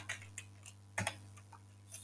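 A few separate, faint keystrokes on a computer keyboard, the loudest at the start and about a second in, over a steady low hum.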